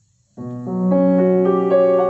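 Piano accompaniment starting suddenly about a third of a second in: low notes held under chords that change every half second or so.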